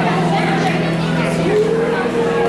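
A woman singing through a PA microphone in long held notes; about one and a half seconds in her voice slides up into a new sustained note, with a steady low note held beneath.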